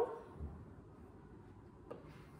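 Quiet room tone, with the tail of a spoken word at the very start and one faint click near the end.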